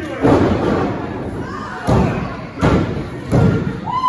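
Heavy thuds on a wrestling ring: bodies hitting the canvas-covered ring floor, four impacts, one near the start and then three in quick succession from about two seconds in, with crowd voices in the hall between them.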